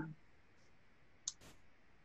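Near silence: room tone in a pause of speech, broken by one short sharp click a little after a second in, followed by a fainter tick.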